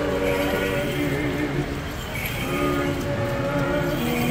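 Voices chanting an Orthodox hymn together in long held notes, with a short break about two seconds in.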